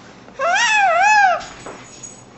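An infant's single high-pitched squealing vocalisation, about a second long, its pitch rising and falling twice.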